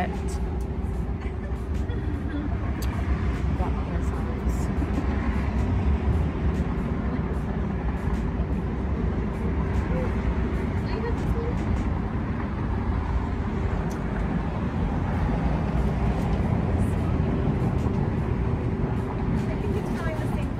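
A steady low background rumble with a constant mid-pitched hum running under it and a few faint light clicks.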